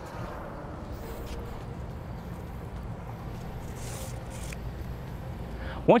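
Steady low outdoor background rumble, with a few faint soft scrapes as the nylon cinch strap is pulled through its buckle against the cover fabric.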